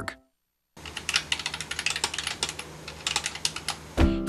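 A moment of silence, then, from about a second in, rapid irregular light clicks, several a second, in the manner of keyboard typing, over a faint low hum.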